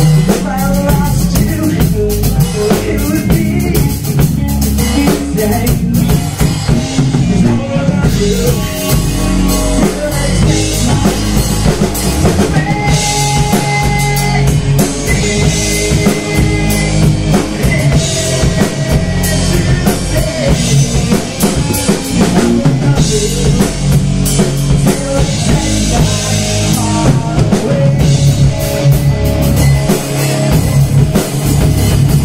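Live rock band playing an instrumental break: drum kit, bass and electric guitar, with a melody line of long held high notes in the middle.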